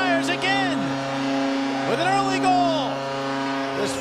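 Arena goal horn sounding a steady low chord after a home goal, with the crowd cheering and whooping over it; the horn cuts off near the end.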